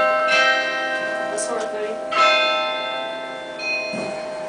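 Carillon bells struck from the baton keyboard: a few single notes a second or two apart, each ringing on with many overtones that overlap and slowly die away.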